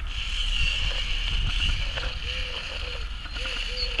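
LEGO Technic XL motor and its gear train driving a trial-truck model up a rough slope, giving a steady high-pitched whine that fades in the second half.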